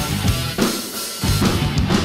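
Tama acoustic drum kit played along to a rock recording: bass drum, snare and cymbal hits over the backing track, with a short break in the low end midway through.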